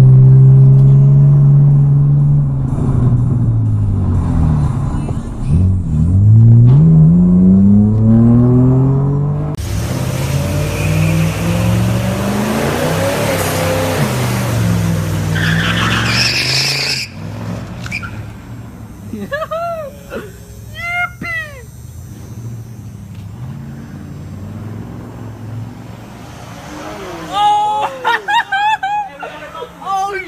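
A car engine revving, its pitch rising and falling repeatedly, then several seconds of loud rushing noise, after which it settles to a quieter engine hum.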